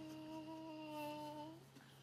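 A young girl's voice holding one steady sung note, closed and hum-like, for about a second and a half before it breaks off.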